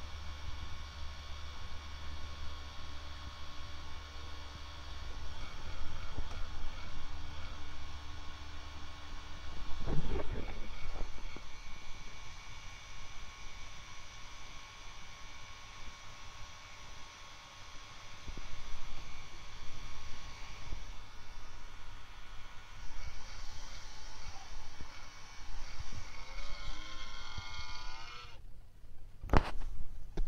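Small LED projector making a moaning noise it is not meant to make: a steady whine of several held tones over a low hum. Its tones waver shortly before it stops suddenly near the end, followed by a sharp click; a single knock comes about ten seconds in.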